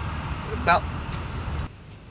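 A man says one short word over a steady low rumble, which cuts off abruptly near the end.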